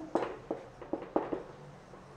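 Marker pen writing on a whiteboard: a quick run of short squeaks and taps as the letters are stroked out, mostly in the first second and a half.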